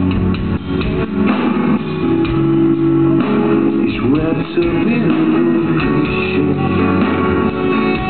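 Live rock band playing, with electric guitar prominent over bass, recorded on a compact camera's microphone in the audience.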